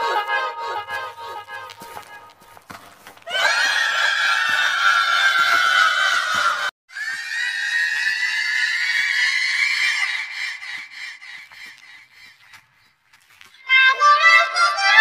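Electronically distorted cartoon soundtrack: a long, loud pitched call, falling slightly, that cuts off suddenly about seven seconds in. A second long call follows, slowly rising in pitch, then fades away.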